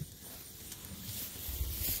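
Faint rustling of tall pasture grass and clothing as a person rises from kneeling and steps through it, with a low rumble near the end.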